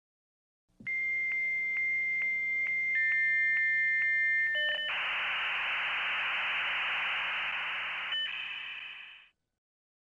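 Dial-up modem handshake. A high steady answer tone broken by a click about every half second, a second lower tone joins, then a few seconds of loud hissing scrambled-data noise. It breaks into tones again near the end and then stops.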